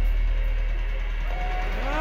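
Live metal band's amplified guitars and bass ringing out over a steady low hum with the drums stopped, as a song ends. Near the end comes a pitched note that rises and then falls.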